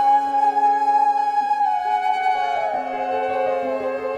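Electric-amplified violin holding a long high note, then sliding down in slow glides near the end, over sustained keyboard chords in a live band song.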